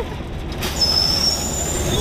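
Drop-tower amusement ride setting off: about half a second in, a sudden rush of hiss rises over a steady low rumble, with a high-pitched metallic squeal on top for about a second.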